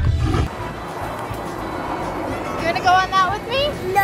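A small child's high voice giving a few drawn-out cries in the second half, over steady background noise.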